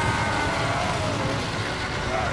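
Cartoon sound effect of a super-speed rush: a dense low rumble of rushing wind under a whining tone that slides slowly down in pitch.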